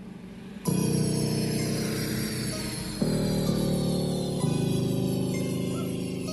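Bass-test music played at full volume on a JBL Charge 3 Bluetooth speaker. A quiet plucked opening gives way under a second in to a loud, sustained bass-heavy section, which shifts note twice, with high tones sliding steadily downward above it.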